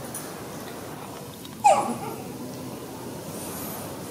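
A baby macaque gives one short, loud cry about one and a half seconds in, falling in pitch.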